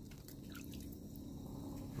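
Faint drips and small splashes of water in an ice-fishing hole as a released tomcod is slipped back in, a few light ticks mostly in the first second.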